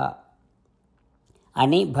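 A man's voice narrating in Telugu, broken by a pause of about a second of near silence before he speaks again.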